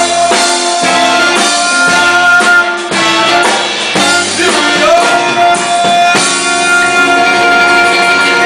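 Live rock and roll band playing, with a male singer over electric guitar, bass and drum kit. Two long held notes come in, one at the start and one about five seconds in, each sliding up into pitch.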